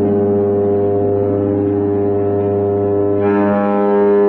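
Droning experimental music: several long tones held steady over a constant low hum, with a new, higher set of tones coming in about three seconds in.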